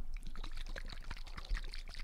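A small bottle of hot sauce shaken hard right up against a microphone: rapid liquid sloshing with a quick run of clicks.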